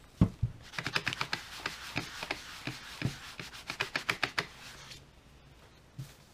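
Quick, repeated rubbing strokes on a foam polishing pad, a run of short scratchy swishes lasting about four seconds, after a couple of low knocks at the start. A single knock near the end.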